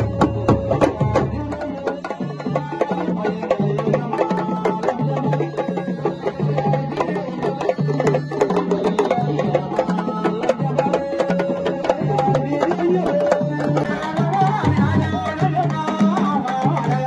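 An ensemble of Senegalese sabar drums played with sticks and bare hands, a dense, fast rhythm of sharp strokes over a repeating low drum pattern.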